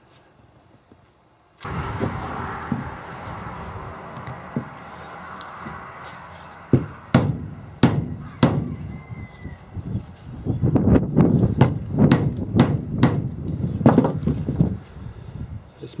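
Hammer blows on a steel pin punch, driving the pin out of an NV4500 transmission shifter: a run of sharp metallic taps, a few spaced strikes at first and then quicker ones, over a steady background noise that starts suddenly a couple of seconds in.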